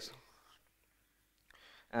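A pause in a man's lecture speech: the last word trails off, then near silence, a faint breath-like sound, and the next word begins just before the end.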